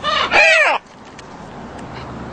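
A macaw calling: two quick calls in the first second, the second longer and rising then falling in pitch.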